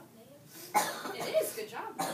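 A sharp cough about three-quarters of a second in, followed by indistinct voices.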